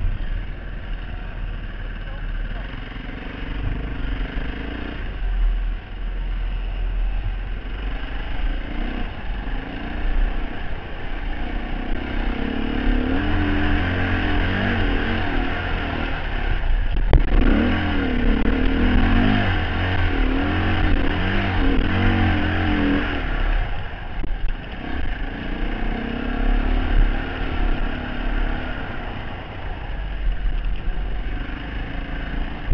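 Dirt bike engine heard from the rider's helmet, revving up and down while riding, over a heavy low rumble. The revs rise and fall most busily in the middle stretch, with one sharp click about seventeen seconds in.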